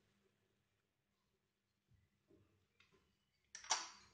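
Near silence, with a few faint soft rustles of a hand mixing dry crumbled khoya and grated coconut in a glass bowl. A short hiss-like burst comes near the end.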